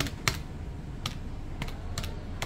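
Keys of a desk calculator being pressed one at a time: about five short, sharp clicks at uneven intervals.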